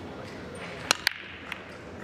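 Pool break shot: the cue tip cracks sharply into the cue ball about a second in. A fifth of a second later a second crack comes as the cue ball smashes into the racked nine balls, and a fainter ball-on-ball click follows half a second after.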